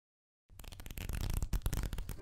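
Sound effect of an animated logo intro: after about half a second of silence, a rapid flurry of clicks and hits that grows louder.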